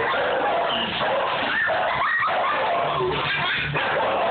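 Dogs barking and yipping excitedly as they lunge at and pull on a mounted deer head.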